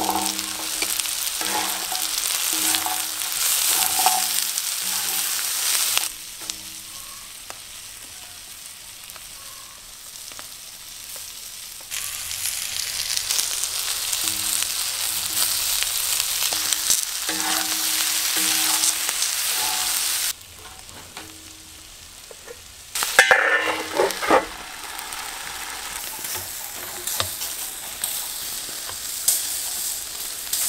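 Meat, onions and peppers sizzling on a hot round steel griddle. The hiss comes in louder and quieter stretches that switch suddenly, and a brief loud clatter comes about three-quarters of the way through.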